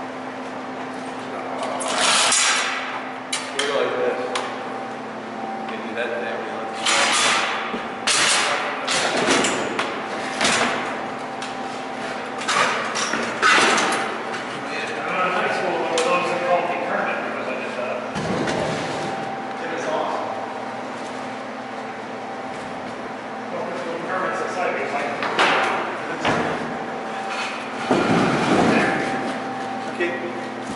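Knocks, bangs and scrapes of a wooden crate and shop equipment being pushed and slid into place against a wall, echoing in a large room, over a steady hum and indistinct talk.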